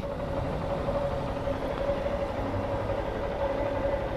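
Motorcycle engine running steadily at low revs, close to the microphone.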